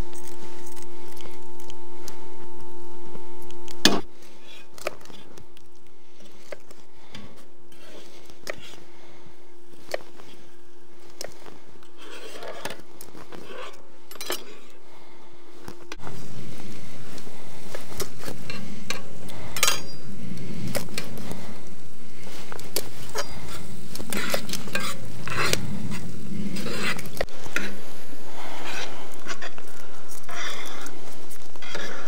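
A steady hum for the first few seconds, then a chef's knife cutting pollock into chunks on a wooden cutting board, with scattered knocks of the blade on the board. In the second half, clinks of steel dishes and a tray over a steady hiss.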